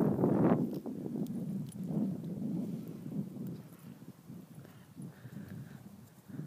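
Outdoor rumble on a phone microphone: low, uneven thuds and wind noise, loudest in the first half-second and fading after.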